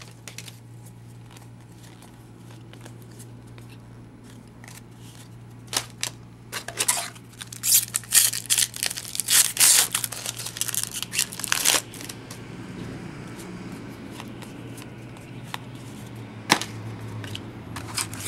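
Foil trading-card pack wrappers crinkling and tearing as packs are pulled open by hand, in a flurry of bursts between about six and twelve seconds in, with quieter card handling before and after. A steady low hum runs underneath.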